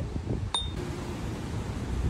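A single light clink of tableware about half a second in, ringing briefly at a high pitch, over a steady low background rumble.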